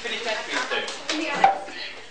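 Several short knocks and clatters of junk materials being handled and worked on tabletops, the loudest about one and a half seconds in, over people talking.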